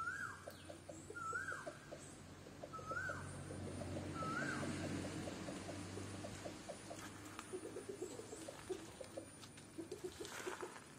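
A bird calling over and over, a short whistle that rises then falls, repeated about every second and a half, four times in the first half. Faint rapid ticking and a low steady hum sound underneath.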